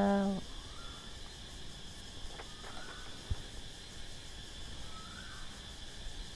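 A woman's chanting voice holds its last note and stops about half a second in, leaving a faint night-time background: a steady high-pitched insect drone, likely crickets, with a few faint short calls and a single click about three seconds in.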